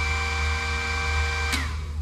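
Boat's DC bilge blower motor switched on, running with a steady whine, and cutting off suddenly about a second and a half in.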